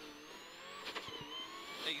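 Subaru Impreza rally car's flat-four engine heard from inside the cabin, pulling hard with its pitch slowly rising as the car accelerates. There are two brief clicks, about a second in and near the end.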